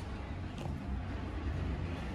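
Steady low hum inside an elevator cab, with a faint click about half a second in.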